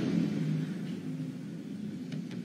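Low, steady rumbling drone from the soundtrack, with a few faint held tones, getting slowly quieter.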